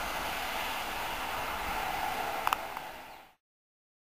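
Steady hiss of outdoor background noise with two short clicks about two and a half seconds in. It fades and then cuts to dead digital silence at an edit just over three seconds in.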